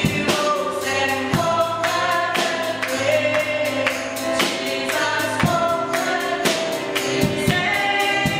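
Live gospel worship song: a woman singing lead with other voices joining in, over a steady beat of drums and percussion.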